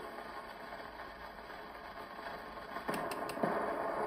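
Steady surface hiss from a shellac 78 rpm record played on a Victrola Credenza Orthophonic acoustic phonograph, the needle still in the groove with no music left. About three seconds in there is a short cluster of three clicks.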